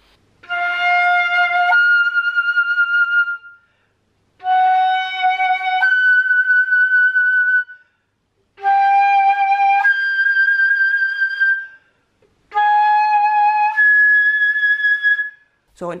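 Concert flute playing four octave slurs, each a lower note held about a second that jumps up to its octave and is held briefly. Each pair is a semitone higher than the last. It is an octave exercise climbing chromatically into the third octave, practice for making the hard high notes there, such as G-sharp, speak.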